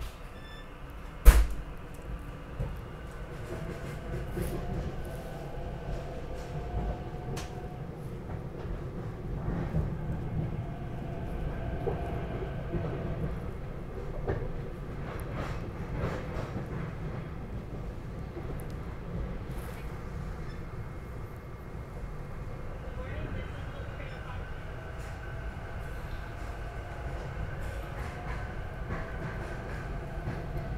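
Steady rumble of a regional rail train heard from inside the passenger car, growing louder over the first few seconds. A single sharp thump about a second in is the loudest sound.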